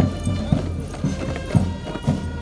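Military march music with held brass-like tones over a steady beat about two thumps a second, in marching tempo.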